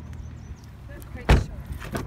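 A car door shutting with one solid thud a little over a second in, then a lighter click near the end as a car door handle is pulled.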